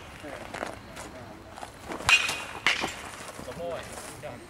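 A metal baseball bat hitting a pitched ball about two seconds in: one sharp crack with a brief ringing ping, followed by a weaker second knock about half a second later.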